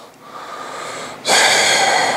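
A man's breathing close to a clip-on microphone: a faint breath in, then a loud, long breath out starting a little over a second in.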